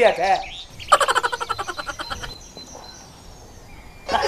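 An animal's rapid pulsed call, about a second and a half long, dying away, just after a brief voice-like sound at the start.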